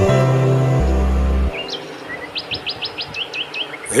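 Song music runs on for the first second and a half, then gives way to a small bird chirping: a quick run of about six short rising chirps, with a few more notes before and after.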